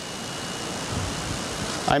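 Steady hiss from a cheap wireless microphone, with a faint steady whistle of radio interference running through it; some low-pitched noise comes in during the second half.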